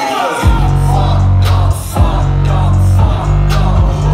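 Loud live hip-hop music from a concert sound system, with a heavy deep bass coming back in about half a second in and running on under the beat.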